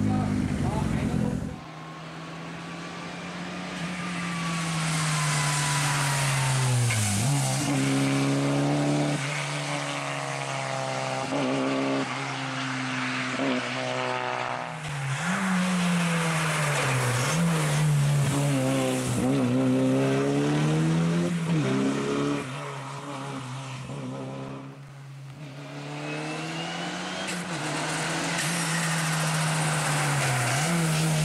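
Rally car engine driven hard on a stage, its pitch repeatedly climbing under acceleration and dropping at each gear change or lift. It fades and swells as the car passes, with abrupt cuts between passes.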